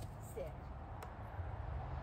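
A short spoken dog-training command, 'sit', over a steady low rumble, with one sharp click about a second in.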